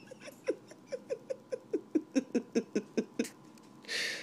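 A woman's stifled laughter: a rapid run of short falling 'ha' pulses, about five a second, that stops a little before the end.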